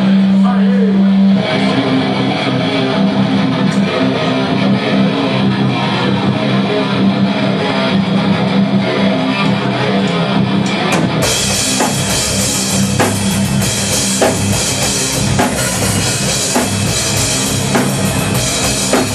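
Metallic hardcore band playing live: heavy electric guitar and drums through the venue PA. It opens on a held low guitar note, and the whole band fills out and gets brighter about eleven seconds in.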